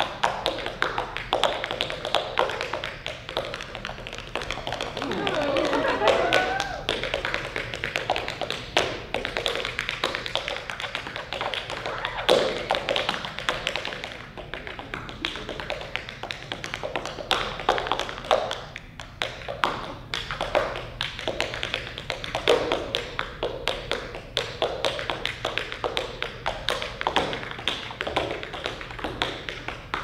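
Tap shoes striking a stage floor in a fast, continuous run of taps with heavier heel and toe strikes mixed in.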